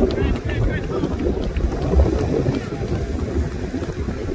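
Wind buffeting the microphone with a rough low rumble and a strong gust about two seconds in. Indistinct shouts from players and spectators on the field come through it near the start and again later.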